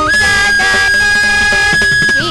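Carnatic bamboo flute (venu) holding one long, steady high note for nearly two seconds, then stepping down to a lower note, over quieter lower accompanying melody.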